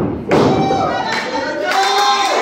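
A thud of a body landing on a wrestling ring mat, followed about a third of a second in by loud shouting from several spectators that carries on.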